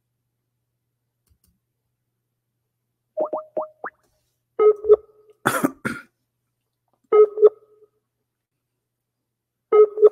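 An outgoing internet call: a few short rising chirps as the call is placed, then a short ringing tone repeating about every two and a half seconds while it waits for an answer. One cough breaks in between the first two rings.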